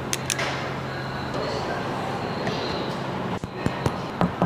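Two quick sharp clicks just after the start as a car key fob is pressed, then a steady low hum of room tone.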